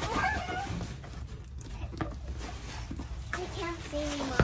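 A large cardboard-and-plastic toy package being handled and lifted out of a cardboard shipping box, with a few knocks and cardboard scraping. Brief high vocal sounds come at the start and once more near the end.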